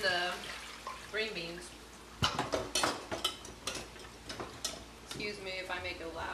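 A utensil stirring food in a pan on the stove, with a run of clinks and scrapes against the pan through the middle.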